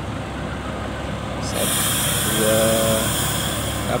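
Agra Mas coach's diesel engine running as the bus drives past, with a loud hiss coming in about a second and a half in and a short pitched sound near the middle.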